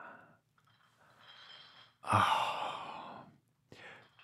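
A person's long sigh starting about two seconds in, voiced at the start and trailing off into breath, after a softer breath out at the beginning.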